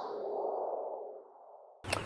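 Fading tail of an electronic logo-sting sound effect, a synthesized whoosh with echo, dying away over about a second. Near the end comes a brief silence, then faint outdoor background.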